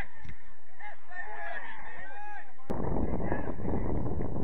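Distant shouting voices of players calling on the pitch, short rising-and-falling calls overlapping one another. About two-thirds of the way through they cut off sharply with a click, and loud wind rumble on the microphone takes over.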